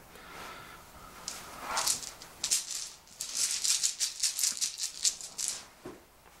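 Plastic order dice rattling inside a cloth dice bag as the bag is shaken to draw the next die. It begins with a few separate shakes, then a quick run of about five shakes a second near the end.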